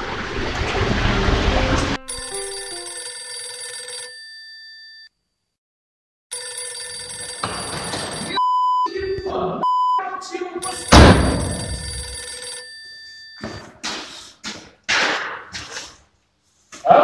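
A desk telephone ringing in repeated rings, each about two seconds long with pauses between. A loud, noisy stretch opens the sound, and there is a sharp, loud hit about eleven seconds in.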